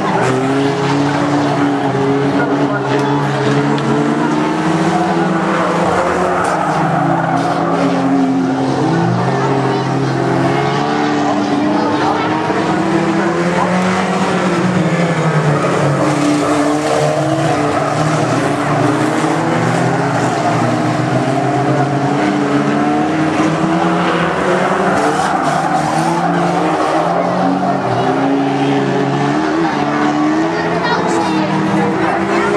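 Several banger racing cars' engines revving up and dropping back as they lap a short oval track, the pitches of different cars overlapping and rising and falling.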